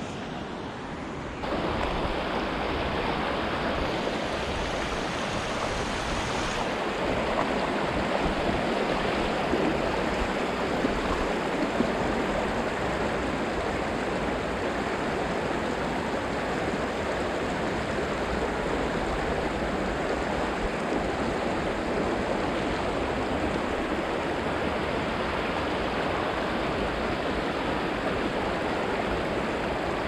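Shallow river riffle: water rushing steadily over and around stones, louder from about a second and a half in.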